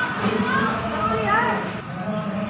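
Background voices, including high-pitched children's voices, talking and calling out in short rising and falling phrases over general crowd noise.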